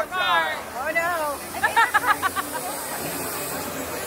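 People's voices calling out, with a quick choppy vocal run about two seconds in, over a steady high hiss from fog machines filling the street with fog.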